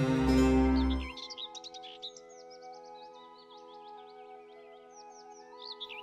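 Recorded dawn-chorus birdsong: many quick chirps and whistling trills over a soft, held chord of background music. Fuller, louder music plays for about the first second, then drops away.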